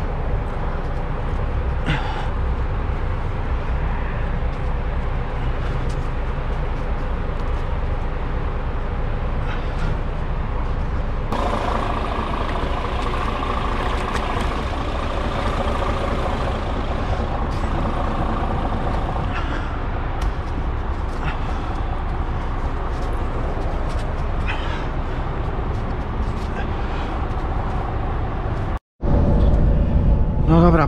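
A DAF truck's diesel engine idling steadily, a constant low rumble. A higher hum joins it about ten seconds in.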